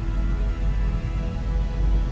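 Dark ambient synthesizer soundscape: a deep, steady drone with sustained tones layered above it.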